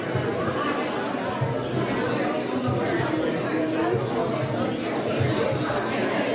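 Crowd chatter: many people talking at once, overlapping voices with no single speaker standing out, at a steady level.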